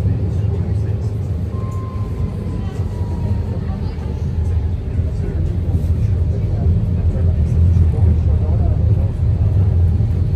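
City tram running, heard from inside the car: a steady low rumble that grows a little louder in the second half, with a faint thin tone sliding slightly down about two seconds in.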